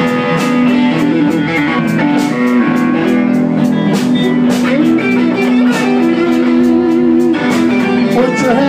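Live blues band playing an instrumental passage: electric guitar with held and bending notes over drums keeping a steady beat.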